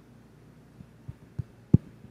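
Low thumps of a handheld microphone being handled: four bumps, each louder than the last, the final one the loudest, over a steady low hum.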